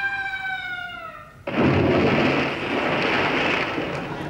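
Cartoon-style sound effect: a long falling whistle-like tone that dies out about a second in, followed by a sudden loud splash of water that fades away over the next two and a half seconds.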